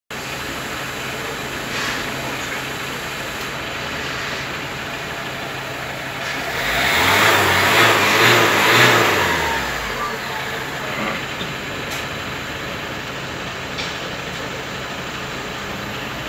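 Small van's engine idling during an exhaust emission test, then revved hard once about six seconds in, held high for about three seconds and let fall back to idle.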